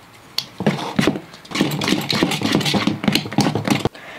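Steel spoon stirring thick dosa batter in a steel bowl: a quick, uneven run of wet scrapes and clinks starting about half a second in and stopping just before the end, over a low steady hum.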